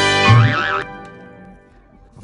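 Comic organ-like music sting ending in a wobbling boing sound effect, which cuts off about a second in.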